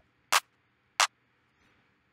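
Two short electronic clap samples auditioned one after the other, about two-thirds of a second apart.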